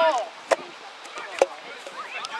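A loud shout at the start, then two sharp knocks about a second apart over faint outdoor background noise.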